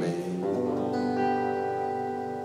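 Acoustic guitar chord struck about half a second in, then left to ring and slowly fade: the closing chord of a spoken-word piece.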